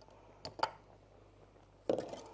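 Two light clicks about half a second in, then a sharper knock near the end: kitchen utensils knocking against cookware as pots are handled and stirred on the stove.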